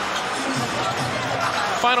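Arena crowd noise during an NBA game, with a basketball being dribbled on the hardwood court; a commentator starts speaking near the end.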